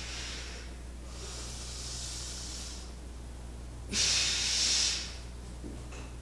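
A martial artist's forceful hissing breaths during a slow kung fu form: three long exhalations, the loudest about four seconds in and lasting about a second. A steady low mains hum runs underneath.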